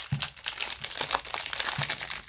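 Plastic wrapper of a Donruss baseball card fat pack crinkling as hands tear it open: a dense, irregular run of sharp crackles.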